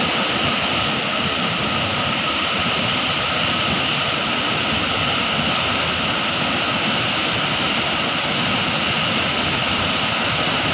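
A large waterfall, about 70 m high, plunging into its pool: a steady, unbroken rush of falling water that stays even throughout.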